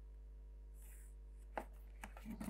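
Faint pencil work on drawing paper over a steady low hum: a brief soft pencil stroke along a plastic set square a little under a second in, then a single light tap of the drafting tools near the end.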